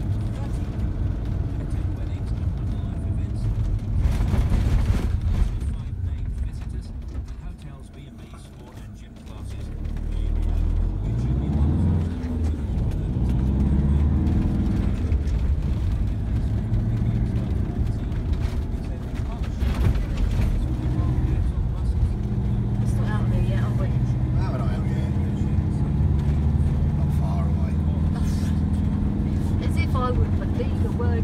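Car engine and road noise heard from inside the cabin. The noise drops about a third of the way in as the car slows, then the engine pulls away with a rising note and runs steadily.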